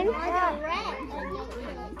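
Children's voices: a child speaking, with other children's voices around.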